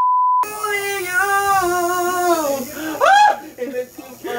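A half-second censor bleep, then a man being tattooed wails a long wavering sung note, ending in a short rising-and-falling cry about three seconds in.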